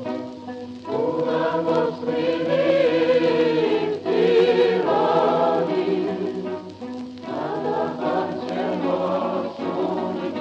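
A choir singing in the music track, in long held phrases with short breaks between them.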